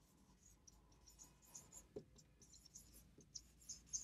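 A marker pen on a whiteboard, writing a word by hand: faint, short squeaks and scratches in quick, irregular strokes.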